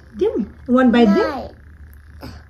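A child's wordless closed-mouth 'mm' sounds: a short rising-and-falling one, then a longer wavering one.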